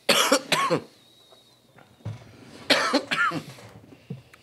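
A man coughing hard after inhaling cannabis smoke: a burst of rough coughs at the start, then another short coughing fit nearly three seconds in.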